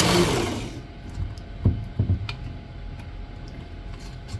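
Work Sharp Ken Onion sharpener's belt motor spinning down after being switched off, fading out within about the first second. Then a few knocks and clicks of the plastic blade grinding attachment being handled, the loudest two close together at about two seconds in.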